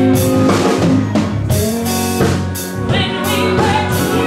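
Live band music: a drum kit keeps a steady beat under bass and guitar, with a saxophone holding long notes.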